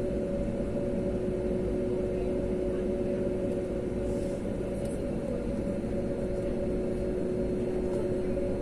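Jet airliner cabin noise while taxiing: a steady low rumble from the engines at taxi power with a constant two-note hum, heard from inside the cabin.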